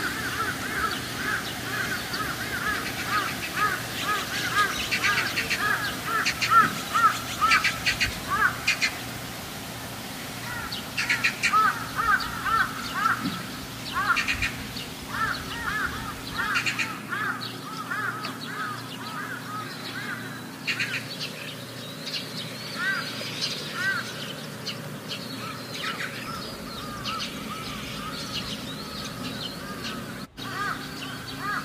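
Birds calling outdoors: a rapid run of short rising-and-falling calls, several a second, thinning out after the first half.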